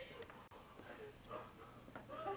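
Quiet room tone with faint, indistinct voices in the background.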